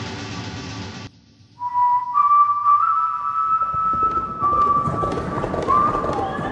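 Upbeat electronic pop music cuts off abruptly about a second in. After a brief silence, a clear, high, steady whistling tone begins, holds, and steps up slightly in pitch. Noisy outdoor sound rises under it in the second half.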